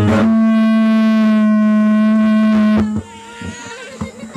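Dayunday music on an amplified acoustic guitar: one long, steady held note that cuts off about three seconds in, leaving a much quieter moment at the end.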